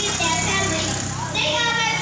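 A young girl speaking into a handheld microphone.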